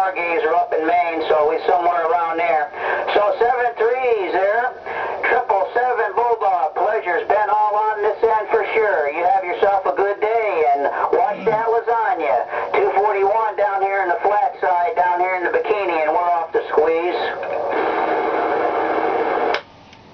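A voice heard over a CB radio's speaker, a distant station coming in on channel 28 skip. Near the end the voice gives way to a steady tone for a second or two, then the signal cuts off briefly.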